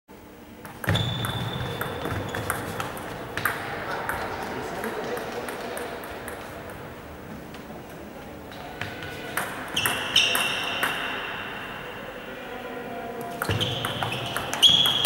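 Table tennis ball clicking off bats and the table in rallies, echoing in a large sports hall, with a quieter pause between points in the middle. A few high squeaks and some voices are heard too.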